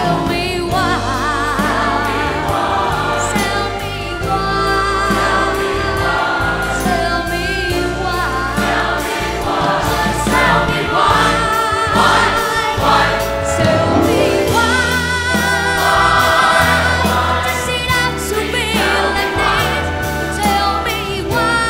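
A large choir singing with a live band and orchestra, including a drum kit and strings, the sung notes wavering with vibrato over a steady bass.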